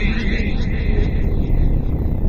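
A loud, steady low rumble, with a voice trailing off during the first second.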